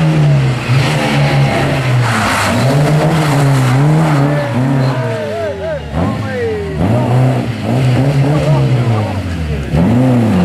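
Opel Ascona rally car engine revving hard, its pitch rising and falling again and again as the driver lifts off and gets back on the throttle through a tight bend.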